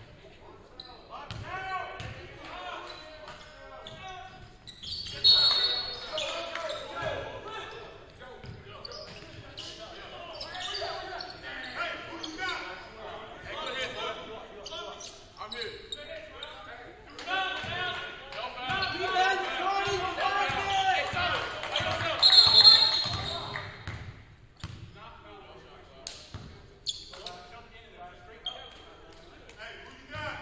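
Live basketball game sounds in a gymnasium: the ball bouncing on the hardwood court and indistinct voices from players and the bench. Two short, loud referee whistle blasts sound, one about five seconds in and another around 22 seconds.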